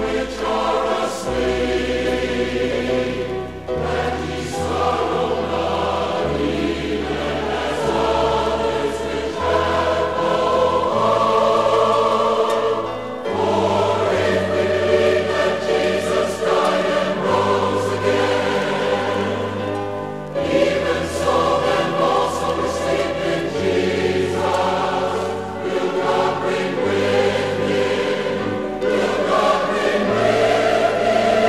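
A choir singing a gospel song with instrumental accompaniment, over sustained bass notes that change every second or two.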